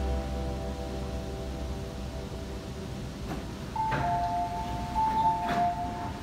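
Background music fading out, then an MTR train's two-note door chime sounding as the train and platform screen doors open, with a couple of sharp clacks from the door mechanisms.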